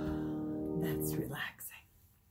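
The final chord of a piece on a Baldwin grand piano ringing on and fading, then damped off about a second and a half in. A short breathy voice sound follows just as the chord stops.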